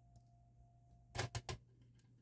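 A screwdriver and small jack screws clicking against the rear panel of a SteppIR SDA 100 antenna controller while the screws are set loosely: three quick clicks a little over a second in, over a faint steady hum.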